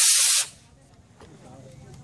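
A3 model rocket motor firing at lift-off: a loud rushing hiss that cuts off suddenly about half a second in as the small motor burns out. Faint background follows.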